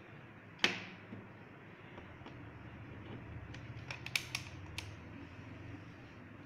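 Plastic clicks and knocks of test leads being handled and plugged into the sockets of an electronics trainer board. One sharp click comes about half a second in, and a cluster of small clicks follows around four seconds in, over a faint low hum.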